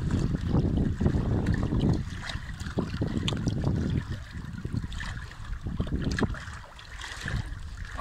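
Wind buffeting the microphone, a gusty low rumble that is strongest for the first two seconds and then eases off.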